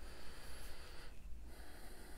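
A person's breathing close to a clip-on microphone: a soft breath lasting about a second, then, after a short pause, another starting about halfway through.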